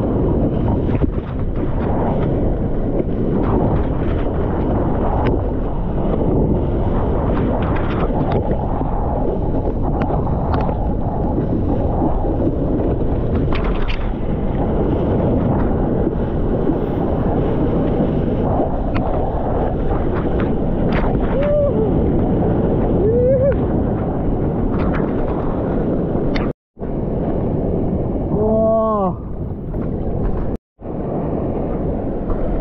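Water rushing and wind buffeting a GoPro's microphone as a surfer moves through the surf on his board, a steady noisy wash. A short rising-and-falling call comes about three-quarters of the way in, and a louder one near the end.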